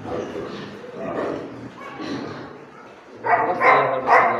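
A pen of young pigs grunting and squealing, with a louder burst of squeals near the end.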